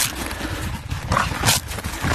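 A Staffordshire bull terrier playing in snow, making a few short noisy bursts, the clearest about a second and a half in.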